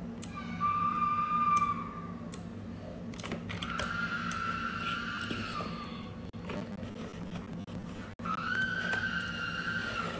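A siren wailing in three long held tones, each sliding down in pitch at its end, over a steady low hum.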